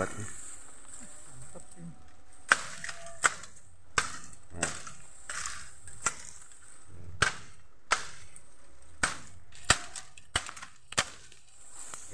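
Golok (machete) chopping bamboo: about a dozen sharp, separate strikes at uneven spacing, roughly one a second, starting a couple of seconds in.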